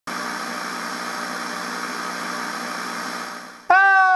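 Steady noise and hum with several steady tones, fading out about three and a half seconds in. Then, just before the end, a person's voice calls out loudly on one held note.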